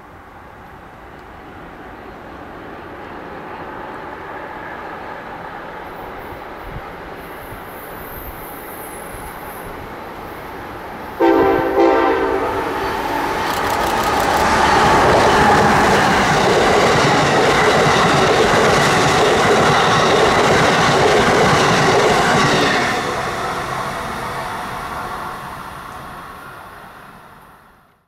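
Amtrak passenger train led by a Siemens ACS-64 electric locomotive approaching at speed: a rumble that builds, then the locomotive's horn sounding briefly about eleven seconds in. The loud rush of the train going by follows and fades away near the end.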